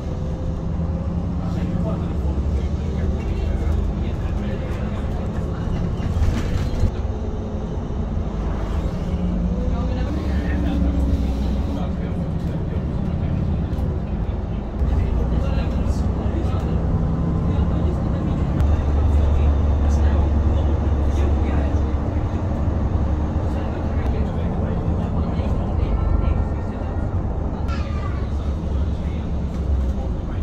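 Bus engine and road noise heard from inside the passenger cabin while driving, a steady low rumble that grows heavier for several seconds in the middle. Faint voices can be heard beneath it.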